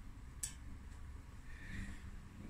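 Quiet kitchen room tone: a low steady hum with one short tick about half a second in.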